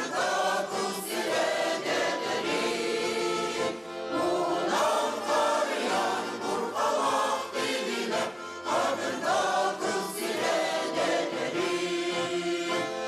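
A women's choir singing a Sakha-language song together, in phrases of a few seconds with short breaks between them.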